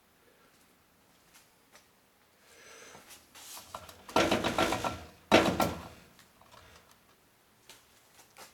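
A plastic soda bottle gripped and handled by hand inside a microwave oven: two rough, noisy bursts a little past the middle, the first about a second long and the second shorter.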